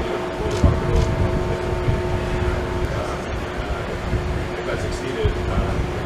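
Wind buffeting an outdoor microphone with a gusty low rumble, under faint, indistinct voices and a steady background hum that partly fades about three seconds in.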